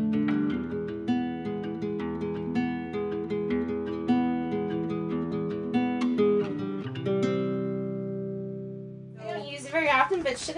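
Background music: a melody of plucked notes ending on a held chord that fades out around seven to nine seconds in. A woman starts talking just before the end.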